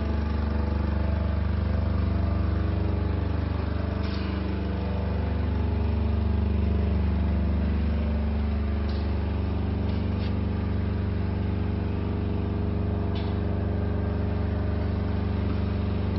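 An engine running steadily at idle, an even low hum, with a few faint clicks.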